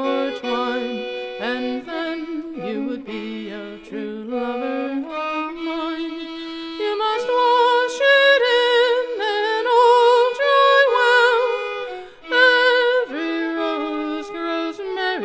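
Fiddle playing the slow folk ballad tune, with long wavering notes that grow louder in the second half.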